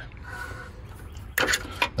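A few light clicks and taps about a second and a half in, from the small distributor ignition coil assembly being handled; otherwise only low background.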